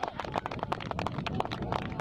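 Scattered hand-clapping from a few spectators, many quick irregular claps, with faint distant shouting near the start and the end.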